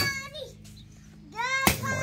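Machete (pelu) chopping at grass and turf: two sharp strikes about 1.7 seconds apart. Each is joined to a short, high-pitched shout of effort from the child swinging it.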